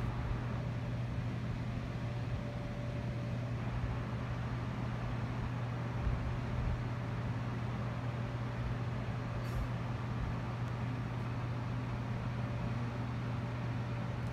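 A steady low hum that holds an even pitch and level throughout, with a faint click about halfway through.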